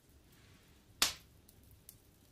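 A single short, sharp click about a second in; otherwise near silence.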